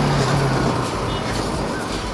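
Bajaj Pulsar NS200's single-cylinder engine running at around 30 km/h under a steady rush of wind and road noise. Its steady hum eases off about a second in.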